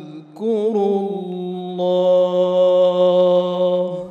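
A man's voice chanting Qur'anic recitation in the melodic tajwid style: a short break, a wavering melismatic phrase, then one long held note that ends the phrase.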